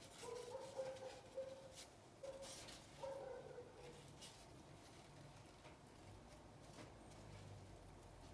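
Near silence, with a few faint short whining calls from an animal in the first half.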